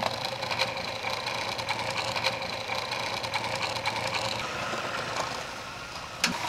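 Food processor motor running, its blade pureeing butter and basil leaves into basil butter: a steady whir that drops a little in level near the end.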